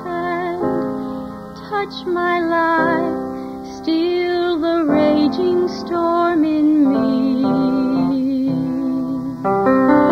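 A slow sacred song from a church soloist recording: a woman's voice holding a melody over piano accompaniment, with a long wavering note near the end.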